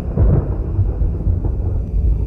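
A deep, continuous thunder-like rumble, heaviest in the very low end and swelling slightly early on, over a faint dark music bed.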